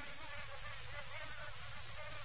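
Faint, steady high-pitched whine of a mosquito in flight, a buzzing sound effect that goes on without a break.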